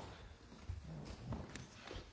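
Footsteps and shuffling, irregular soft thumps with a few sharp clicks, as children come forward in a church sanctuary, with a little faint murmuring.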